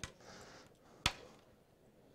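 A single sharp click about a second in, with faint rustling before it: electrical leads and a small hand-crank generator being handled and connected.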